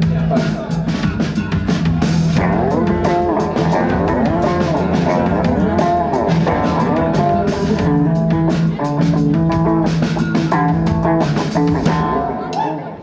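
Indie rock band playing live: electric guitars with bending, wavering notes over a steady bass note and drum kit.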